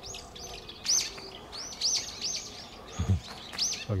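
Small songbirds chirping in the trees: short, high, arched calls repeated in quick runs of two or three.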